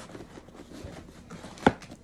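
A cardboard shipping box being handled and opened: soft scraping and rustling, with one sharp knock about one and a half seconds in.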